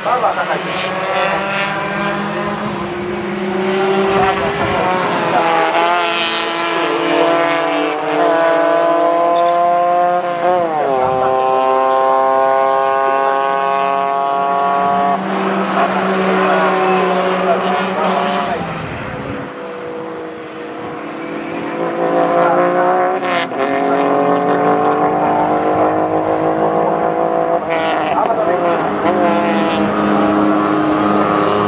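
Race car engines revving hard around the circuit, each climbing in pitch for a few seconds and dropping back at a gear change, over and over, with more than one car heard. The sound fades for a moment about two-thirds of the way through, then rises again.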